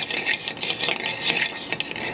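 Metal spoon stirring and scraping diced vegetables and flour around a skillet, a quick, irregular run of scrapes against the pan as the flour cooks into a roux.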